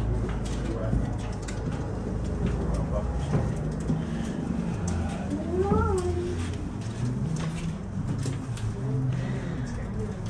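Inside a moving aerial tram cabin: a steady low rumble from the ride, with scattered passengers' voices. About halfway through, a voice gives one short call that rises and falls in pitch.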